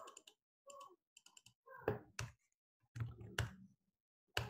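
Faint, scattered clicks of a computer mouse and keyboard keys, with a sharper pair of clicks about two seconds in.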